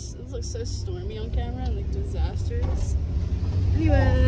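Steady low rumble of a van driving, heard from inside the cabin, getting louder toward the end, with people's voices talking over it.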